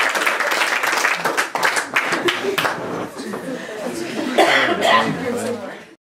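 A small group applauding, the claps thinning out and stopping about two and a half seconds in, followed by several voices talking; the sound cuts off abruptly at the very end.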